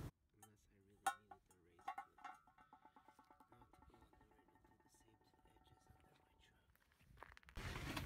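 Near silence, with faint music-like tones and a few soft clicks about one and two seconds in.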